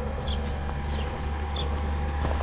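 A bird repeating a short, high, falling chirp three times at even spacing, over a steady low rumble.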